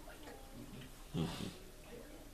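A person's brief low vocal murmur, falling in pitch, about a second in, over the quiet hum of a small room.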